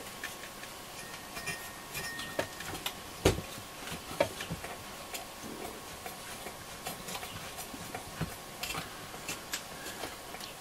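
Light scattered clicks and taps of a pen-type needle oiler and fingers working at the metal frame of a transistor radio's tuning condenser, with two sharper knocks a few seconds in.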